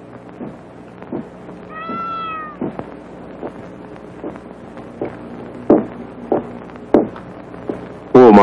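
Film soundtrack with a steady hum: a short high meow-like cry that rises and falls about two seconds in, then evenly paced knocks, about one every two-thirds of a second, growing louder toward the end like footsteps approaching across the office.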